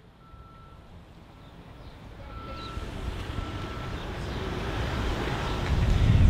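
A vehicle's reversing alarm beeping at a single pitch, about one beep a second, over outdoor background noise that swells toward the end, mostly a low rumble.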